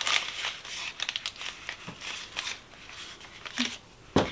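Kraft paper wrapping crinkling and rustling in irregular crackles as small soap packages tied with twine are handled and unwrapped by hand.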